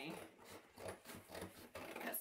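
Scissors snipping through the thin cardboard of a cereal box, a series of short cuts.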